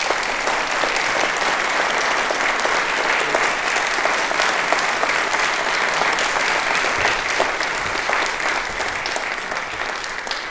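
Audience applauding: steady, dense clapping that eases slightly near the end.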